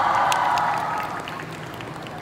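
Audience applause, loudest at first and thinning to scattered claps after about a second.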